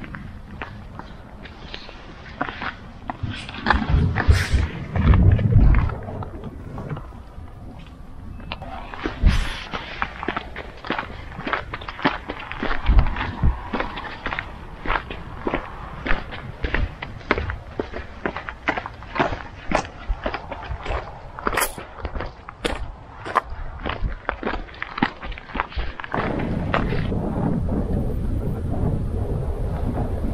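Footsteps on a gravel path at a steady walking pace, with gusts of wind buffeting the microphone. About four seconds before the end the steps give way to steady wind noise on the microphone.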